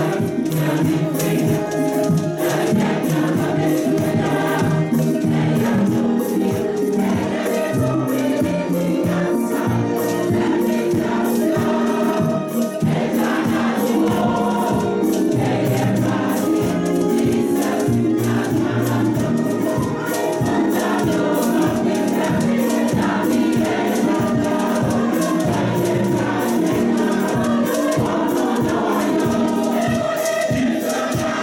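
A church choir singing a gospel praise and worship song together over a steady beat.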